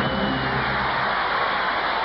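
Large concert audience applauding and cheering steadily after a song, with a few faint band notes under it at first.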